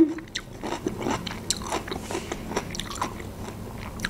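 A person chewing food close to the microphone: irregular small clicking mouth sounds.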